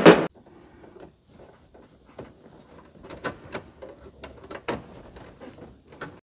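Handling noise from wiring work in a breaker panel: faint rustling of wires with about half a dozen short, sharp clicks of tools and connectors.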